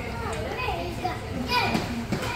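A young child's high voice chattering and vocalizing without clear words, getting louder about a second and a half in.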